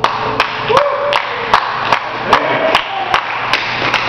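Small audience applauding after a song, one clapper close to the microphone standing out with sharp claps about two and a half times a second, and a few voices calling out.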